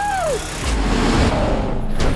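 Action-film trailer soundtrack: a man's strained yell, rising and falling in pitch, which ends about half a second in. A deep vehicle rumble under music follows from a little under a second in.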